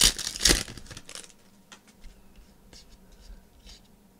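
A foil trading-card pack being torn open: a few loud ripping tears in the first second, then soft rustling and clicking as the cards are handled.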